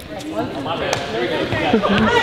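A group of women basketball players talking and calling out all at once, their voices building toward a team cheer, with a basketball bouncing on the gym floor a couple of times.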